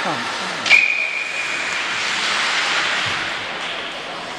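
A hockey referee's whistle: one steady blast about a second long, starting under a second in right after a sharp knock, over the steady hiss of rink and crowd noise.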